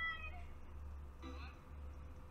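A short, high-pitched, meow-like call that rises and falls in pitch, fading out just after the start, then a briefer high call a little past the middle, over a steady low hum.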